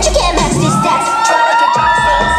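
An audience cheering and screaming: many high-pitched voices overlapping in long, held shrieks, with the dance track's bass underneath at the start and again near the end.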